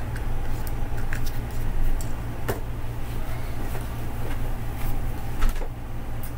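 Scattered clicks and knocks of a small metal-and-plastic tripod and its phone clamp being handled and fitted together, with sharper knocks about halfway through and near the end, over a steady low hum.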